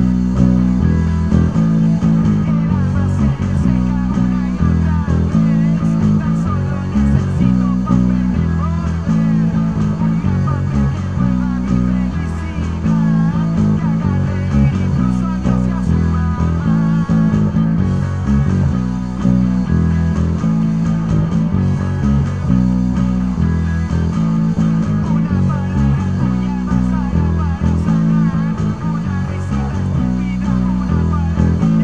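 Electric bass guitar played with fingers, a steady rhythmic bass line laid over a playing rock recording with sung vocals and guitars.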